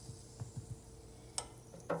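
Light clicks and taps of breaded green tomato slices and fingers against a metal mesh deep-fryer basket: a few faint ones about half a second in, a sharper click past the middle and another near the end, over a faint steady hum.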